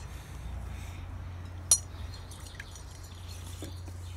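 A metal spoon clinks once against a glass mixing bowl, a short sharp ring about halfway through, with a few faint ticks of stirring around it.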